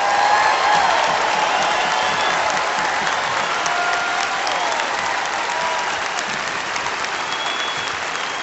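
Concert hall audience applauding after the song ends, with a few scattered shouts among the clapping. The applause eases off slowly.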